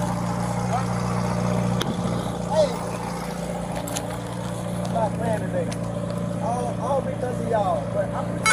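Steady hum of vehicle engines and traffic on a busy road, with indistinct voices talking.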